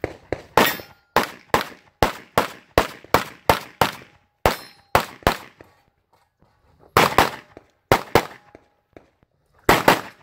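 Rapid pistol fire in a USPSA practical-shooting stage: about twenty shots, many in quick pairs, with a pause of about a second and a half in the middle. A short metallic ring follows some of the shots.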